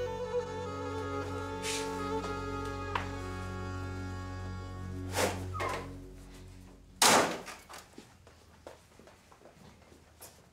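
Drama background score of held notes fading away over the first six seconds, then a single loud thump about seven seconds in from a house door being shut.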